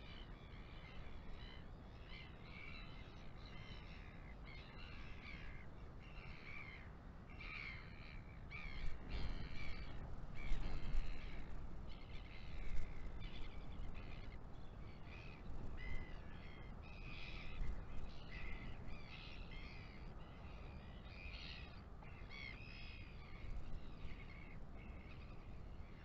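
Wind buffeting the microphone, with stronger gusts about a third of the way in, while other birds keep up frequent short, harsh calls in the background.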